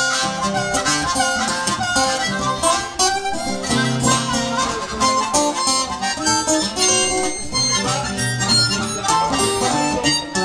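Harmonica solo with bent, wavering notes, played cupped in the hands into a microphone, over acoustic guitar accompaniment in a country blues.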